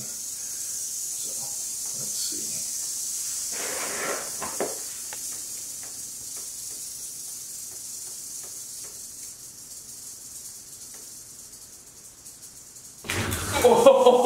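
Gaboon viper hissing, a steady hiss that slowly fades. Near the end comes a sudden loud knock as the viper strikes the dangled rat and hits the metal feeding tongs.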